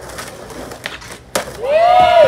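Skateboard rolling on a ramp, with sharp clacks of the board, the loudest about a second and a half in. Near the end a person yells, the pitch rising and falling.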